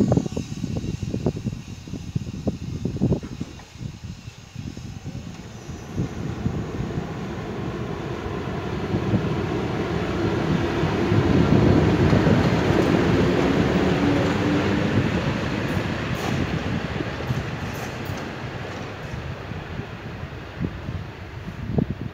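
PKP Intercity EP07 electric locomotive running light past at close range during shunting. Its rumble and motor whine build to a peak about halfway through and then fade as it moves away. Irregular low thumps of wind on the microphone come in the first few seconds.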